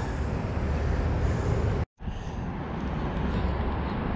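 Steady outdoor background of road traffic rumble, with no distinct single event. About two seconds in it drops out to silence for a split second, then carries on the same.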